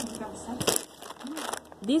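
Plastic candy bag crinkling in a few short rustles, the loudest about two-thirds of a second in.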